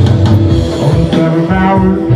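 Live rock band playing, with guitar and drum kit.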